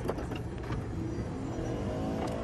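A latch clicks as the sliding side door's handle is pulled, then the camper van's power sliding door and power entry step run, with an electric motor whine that rises in pitch near the end.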